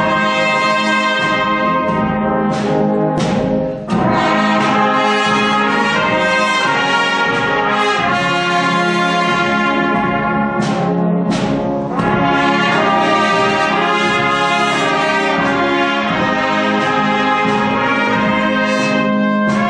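Miners' brass band with trumpets playing held chords at a steady level, dipping briefly about four seconds in and again around twelve seconds.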